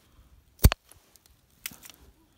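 Bypass pruning shears (secateurs) snipping through a thin, dry persimmon stem: one sharp snip about two-thirds of a second in, then a fainter click about a second later.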